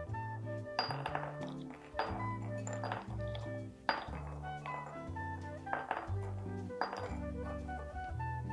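Background music with soft held notes, over which hazelnuts picked from a glass bowl clink now and then into a small glass dish.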